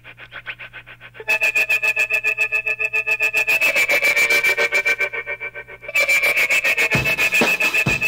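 Opening of a 1960s Peruvian surf and psychedelic rock instrumental: a rapidly pulsing, evenly repeated figure, faint at first, turns much louder about a second in. Low beats join near the end.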